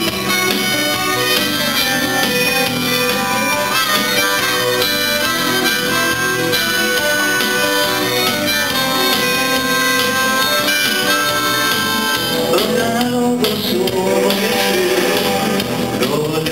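Harmonica solo played into a vocal microphone over a live band, with long held notes.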